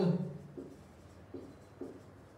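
Marker pen writing on a whiteboard: three short strokes about half a second apart. A man's voice trails off right at the start and is the loudest sound.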